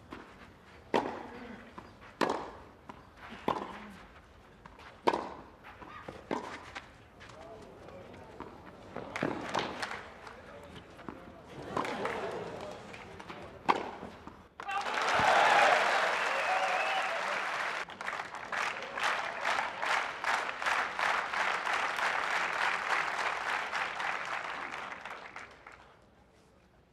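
Tennis ball struck back and forth by racquets in a rally, one sharp hit about every second and a half. About fifteen seconds in, a crowd breaks into loud cheering and applause, settling into steady clapping and fading near the end.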